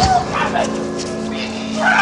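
Voices of actors on an outdoor stage: a short high cry at the start, a low held note underneath, and voices picking up again near the end.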